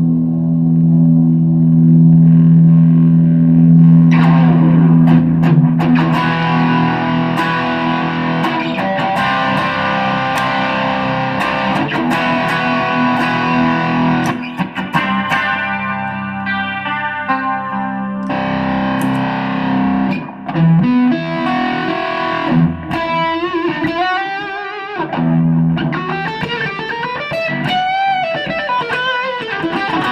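Electric guitar, a Gibson Les Paul Studio, played with overdrive through an effects pedalboard into the Bassman channel of a Fender Supersonic amp. A held low chord rings for the first few seconds, then busy lead playing follows, with wavering, bent notes in the last several seconds.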